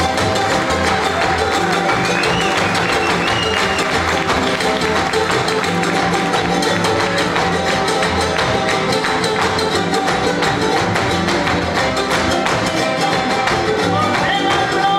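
Son jarocho band playing an instrumental passage: strummed jaranas over an upright bass, with the dancers' zapateado footwork stamping out a rapid percussive beat.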